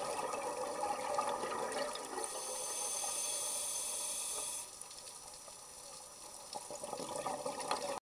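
Underwater sound picked up by a camera filming on a reef: a crackling, bubbling water noise, with a steady high hiss from about two seconds in until nearly five seconds, after which it goes quieter.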